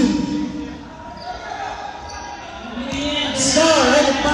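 A basketball bouncing on a hardwood gym floor, with players' voices calling out across the hall. The voices drop away in the middle and come back loud near the end.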